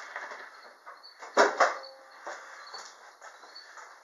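Two sharp knocks in quick succession about a second and a half in, over faint handling and shuffling noise.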